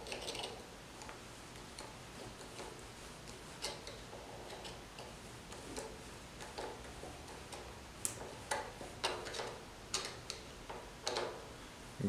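Faint, irregular clicks and small scrapes of a flathead screwdriver turning the screw of a worm-drive hose clamp as it is tightened around an air filter's neck.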